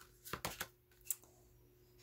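Faint clicks of playing-card-sized oracle cards being handled as one is drawn from the deck: a short flurry about a third of a second in and a single sharper click about a second in.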